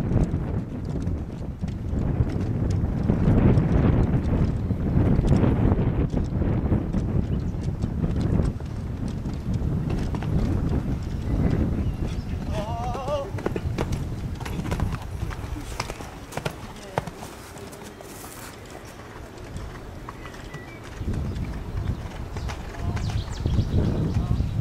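Hoofbeats of a horse cantering on a sand arena during a show-jumping round.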